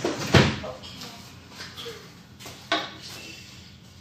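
A few sharp knocks or thumps, like a cupboard or door banging. The loudest comes about a third of a second in, and a second follows near three seconds.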